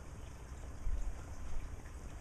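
Faint small clicks of a steel cotter pin being worked into the hole of a pin, a little stubborn to go in, over a steady low rumble.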